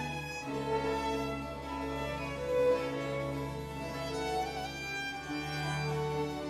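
A period-instrument Baroque string orchestra plays an instrumental opera sinfonia. Violins carry moving melodic lines over a held bass from cello and double bass.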